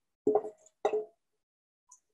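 The last of the oil, melted coconut oil from the recipe, dripping from a tipped stainless steel bowl into a ceramic mixing bowl: two loud plops about half a second apart, each with a brief ring, then a faint tick near the end.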